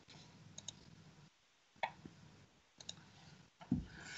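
A few faint, sharp clicks over a low steady hum: a quick pair about half a second in, then single clicks near two and three seconds, and a soft low thump just before the end.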